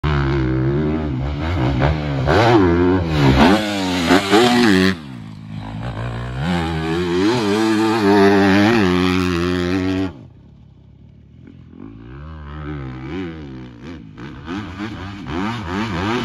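Motocross dirt bike engine ridden hard around a track, the revs rising and falling again and again with the throttle over jumps and bumps. The engine sound drops away sharply about ten seconds in, then builds back up.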